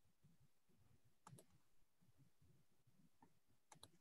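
Near silence with a few faint, sharp clicks: a pair about a second and a half in and three more near the end.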